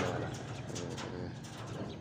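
Low cooing of a dove, a few soft pitched notes about half a second to a second in.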